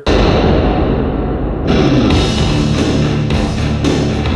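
Music played through a Polk Audio 265-LS in-wall speaker as a sound test, starting abruptly and loud; about a second and a half in, the treble suddenly comes in and the sound brightens.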